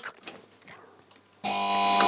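Launch-alarm buzzer of a Soviet nuclear missile launch control panel, starting about one and a half seconds in as a steady, unbroken buzzing tone once the launch button has been pressed, the signal of a (demonstration) missile launch command.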